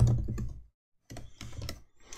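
Typing on a computer keyboard: a quick run of key clicks, with a short pause a little under a second in, then more keystrokes.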